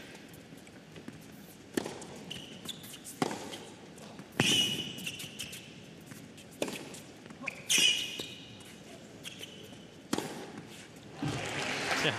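Tennis rally on an indoor hard court: a racket strikes the ball about six times, at uneven gaps of one to two and a half seconds.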